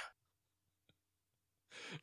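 Near silence: a pause in conversation with one faint click about a second in, then a person's breath audible near the end.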